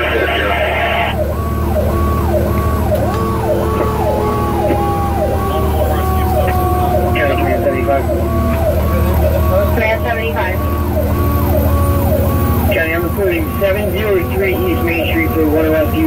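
Fire apparatus sirens heard from inside the cab: an electronic siren in a fast yelp, and a long tone falling slowly in pitch as a mechanical Q siren winds down. Underneath is the truck's steady engine drone.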